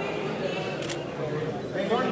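A wooden match struck once against the side of a matchbox, a short sharp scratch about a second in, over the general chatter of a group of people.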